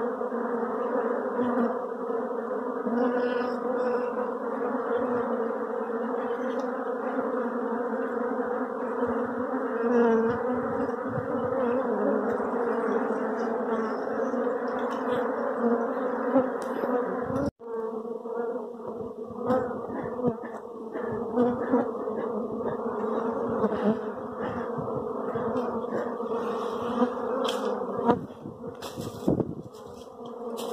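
A dense colony of honey bees buzzing, a loud steady hum of many wings. The hum breaks off for an instant just past halfway, then carries on with scattered short taps from hands working among the comb.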